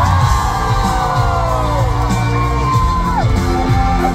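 Live pop song heard from within a concert crowd: the band plays on while long held vocal notes slide slowly downward and the audience whoops and cheers.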